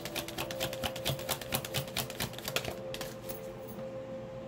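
Tarot deck being shuffled by hand: a fast run of card clicks, about eight a second, stopping about three seconds in. Soft background music holds steady tones underneath.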